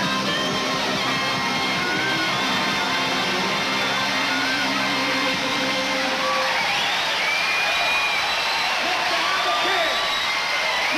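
Live blues band with electric guitar. A held chord rings until about six seconds in, then high bent notes sound over a steady wash of noise.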